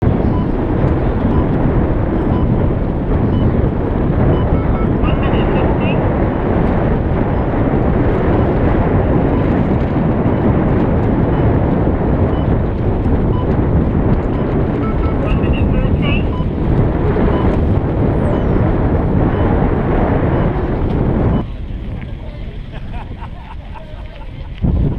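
Wind buffeting the microphone, a loud steady rushing rumble that drops suddenly a few seconds before the end.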